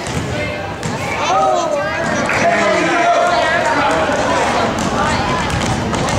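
Voices calling out over one another on a basketball court, with a basketball bouncing on the hardwood floor.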